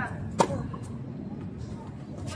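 A tennis racket strikes the ball once, a single sharp hit about half a second in.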